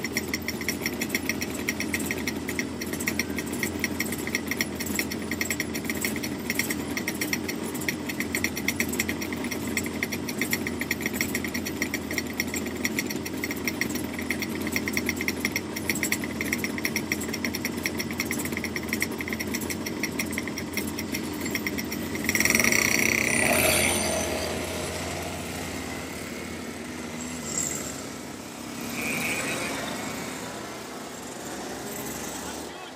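Two-stroke kart engine idling with a steady, fast rattle. About 22 seconds in, a louder engine sound with a high whine rises suddenly, then fades over the next few seconds.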